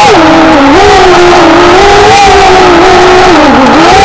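A small engine running at high revs, its pitch rising and falling as the throttle opens and closes, loud and distorted on the microphone.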